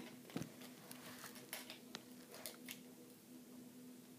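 Faint, scattered clicks of a small plastic toy launcher being handled and loaded, over a faint steady hum.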